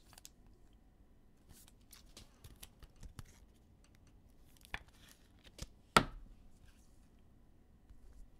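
A trading card being slipped into a plastic sleeve and a rigid plastic top loader: soft rustling and small plastic clicks, with a sharper click about six seconds in.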